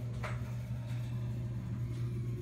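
A steady low hum, with a faint tap about a quarter second in.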